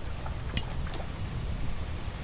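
Outdoor ambience: a steady low rumble of wind on the microphone, with a faint click about half a second in.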